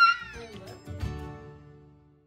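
A cat's high meow trailing off at the start, then a short piece of music with a low hit about a second in, fading out.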